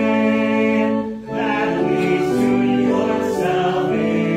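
A hymn sung by a group of voices, the notes held and moving at a steady, slow pace, with a brief break about a second in.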